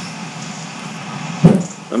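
Steady background noise from a voice call's open microphone, broken about one and a half seconds in by a sharp pop and a brief vocal sound as a speaker starts to talk.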